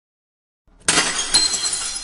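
Glass-shattering sound effect. After silence, a sudden loud crash comes a little under a second in, with a second sharp hit about half a second later, and then a ringing tail that fades.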